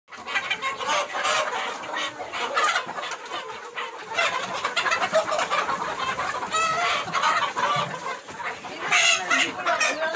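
A large flock of Sonali chickens clucking and calling together, a constant overlapping chatter of many birds with a few louder calls standing out.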